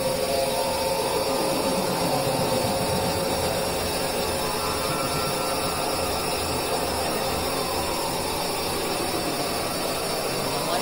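Dense experimental drone mix: several music tracks layered into one steady, noisy wash. Sustained mid-pitched tones sit over a low pulsing, with a faint falling glide near the end.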